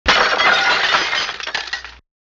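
A sudden crash with a scatter of tinkling, glassy clinks, like breaking glass, that dies away over about two seconds.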